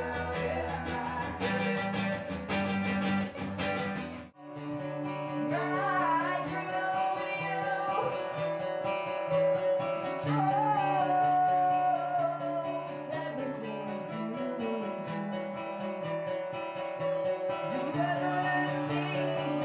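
Two acoustic guitars strummed with a man singing, played live. The music breaks off abruptly about four seconds in, then guitars and voice carry on with a different passage.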